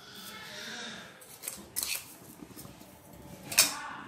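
A wooden spatula and utensils clicking and knocking against a nonstick pan of milk, with a soft hiss in the first second and the loudest knock near the end.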